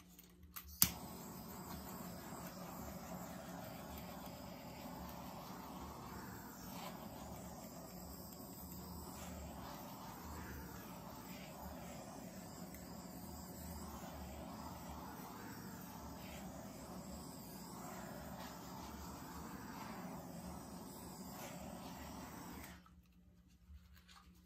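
Handheld torch clicking alight about a second in, then its flame hissing steadily as it is passed over wet acrylic paint to pop air bubbles, until it is shut off suddenly near the end.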